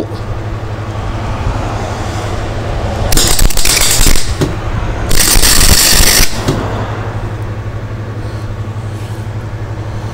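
MIG welder tacking galvanised sheet steel: two crackling bursts of arc, each about a second long, roughly three and five seconds in, over a steady low hum.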